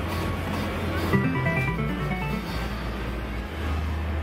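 Slot machine spin ending in a win: a short electronic jingle of quick notes stepping up and down, starting about a second in and lasting about a second and a half, over a steady low hum.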